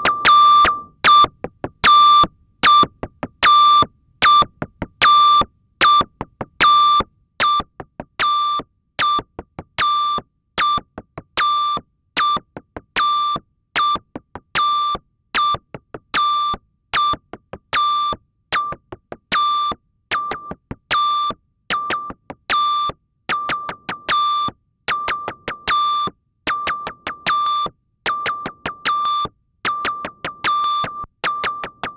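Moog DFAM analog percussion synthesizer running its step sequencer: a looping pattern of short, high-pitched beeps, all on one pitch, with uneven gaps between steps. The notes come roughly every half to three-quarters of a second, with fainter clicks between them.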